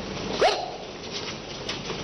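A person's short, sharp yelp, rising quickly in pitch about half a second in, over the rustle and shuffle of people moving about.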